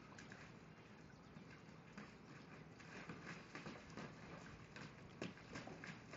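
Faint, irregular pattering of a puppy moving about in a kiddie pool of water, the taps coming more often in the second half.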